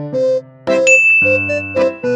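Light, playful background music: a tune of short, separate bell-like notes.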